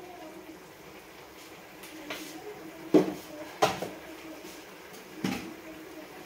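A spatula knocking and scraping against a frying pan while a thick mixture is stirred: four short clinks, the loudest about three seconds in, over a faint steady hum.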